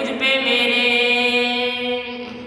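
A boy's voice chanting a devotional recitation, holding one long note at a steady pitch after a brief break near the start.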